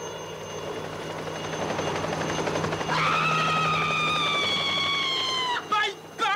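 A rumbling noise builds, then about three seconds in a person lets out one long high-pitched scream that sinks slightly in pitch and cuts off sharply, with a short cry just before the end.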